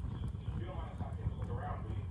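Log fire burning in an open cast-iron fireplace grate: a steady low rumble with scattered small crackles. Faint voices can be heard in the background.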